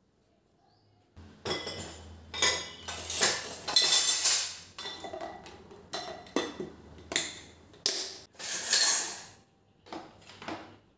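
Steel and glass dishes clinking and knocking as they are set down one after another into a plastic tub. The clatter starts about a second in after near silence and runs in irregular bursts.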